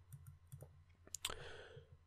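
Faint computer mouse clicks: a couple of soft ticks, then two sharp clicks close together a little over a second in, followed by a short soft breath.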